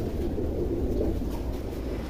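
Steady low rumbling murmur in a pigeon loft, with domestic pigeons cooing faintly in it.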